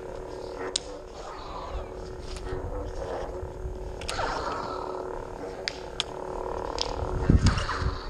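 LED lightsaber blades striking each other while sparring: about half a dozen sharp clacks, one every second or two, over a steady low hum, with a louder low rumble near the end.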